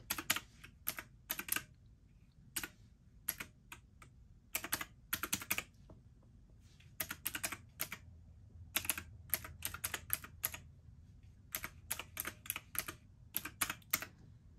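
Clicking of key presses on a desk calculator with round typewriter-style keys, tapped in quick irregular runs with short pauses between as a column of figures is added up.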